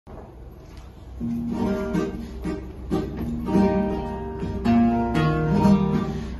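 Acoustic guitar playing the introduction to a carnival pasodoble. Strummed and plucked chords begin about a second in and ring in a rhythmic pattern, with no singing yet.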